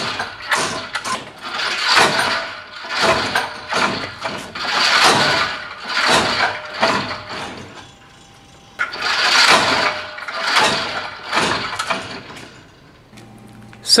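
A motor running in repeated surges about a second apart, with two short lulls, one about two-thirds of the way through and one near the end.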